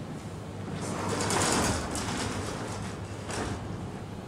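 Sliding chalkboard panel pushed up along its frame: a rumbling scrape lasting about a second, then a shorter rub of a cloth on the chalkboard near the end.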